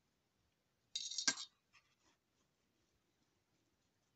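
A short scrape and a sharp click about a second in as a wood-mounted rubber stamp is picked up and handled on the craft desk, followed by a few faint ticks.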